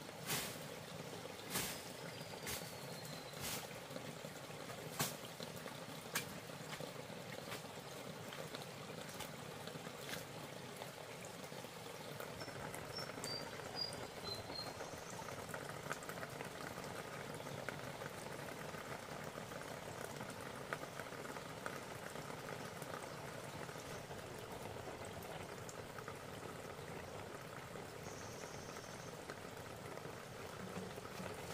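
Water trickling and splashing steadily at a hose water line from about twelve seconds in. Before that, a few sharp snaps of footsteps on dry leaves and twigs.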